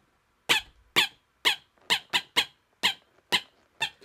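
A squeaky toy squeaked in a quick steady beat, about two squeaks a second, nine in all.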